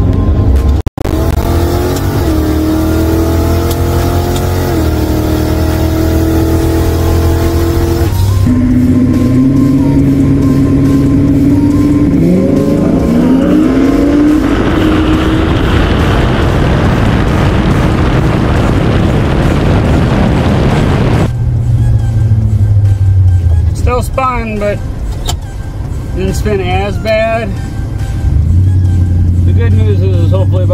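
Lincoln Town Car drag car's engine on a pass: it runs and revs at the line, then climbs in pitch at full throttle down the strip, with heavy rushing noise for several seconds before it backs off. A man's voice comes in near the end.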